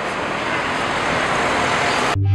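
Busy city street traffic noise: a steady, even rush of cars driving past.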